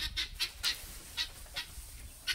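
Quail calling: a quick, irregular run of short, high chirps, about three a second.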